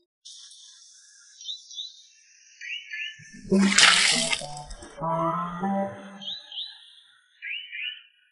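Water dumped from a plastic basin splashing onto concrete pavement, a loud splash about three and a half seconds in, set among music and comic sound effects with short rising chirps.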